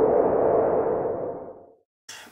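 Intro sound effect: a soft whooshing swell with a steady tone underneath, fading away near the end.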